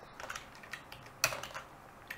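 A few keystrokes on a computer keyboard while code is being copied and pasted, the clearest a little over a second in.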